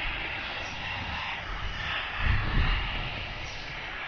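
A steady, noisy rumbling drone that swells louder for a moment a little after two seconds in.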